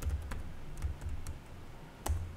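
A few separate keystrokes on a computer keyboard, typing a short line of code.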